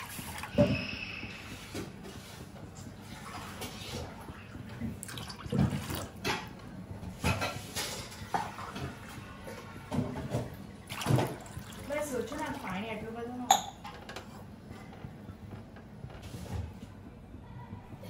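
Water pouring into a stainless steel kadhai at the start, then scattered faint knocks and clinks of steel kitchenware.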